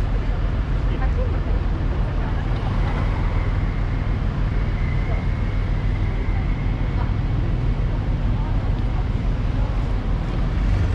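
Busy city intersection ambience: a steady low rumble of road traffic, with people's voices nearby. A faint high steady tone sounds for a few seconds in the middle.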